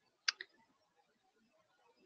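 A single sharp click, followed a moment later by a fainter second click, against near silence.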